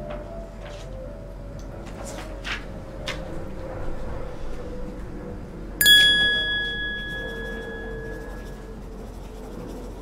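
A bright 'idea' ding sound effect: one sudden bell-like chime about six seconds in that rings out for two to three seconds. A few soft rustles of paper come before it.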